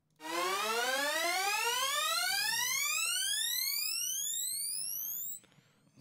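Synth sweep build-up sample ('Surge FX Sweep Buildup 01') previewed in Bitwig's browser: a bright tone rising steadily in pitch for about five seconds, then cutting off.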